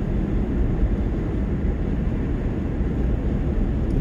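Steady low road and engine rumble inside a car's cabin as it drives.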